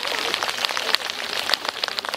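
Crowd of graduates applauding: a dense, steady patter of many hands clapping.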